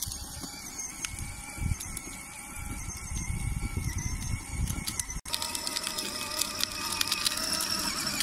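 Small battery-powered ride-on toy motorcycle running: a steady electric motor whine with its plastic wheels rolling over rough asphalt, under a low rumble. The sound drops out briefly about five seconds in, after which rapid fine clicking joins the whine.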